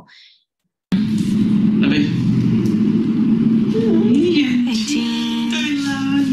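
Soundtrack of a home video played back over a video call. A held, wavering pitched tone that steps and glides in pitch sits over a heavy hiss. It starts abruptly about a second in and cuts off just after.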